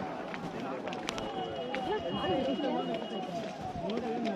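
Several people talking at once, their voices overlapping into chatter with no clear words.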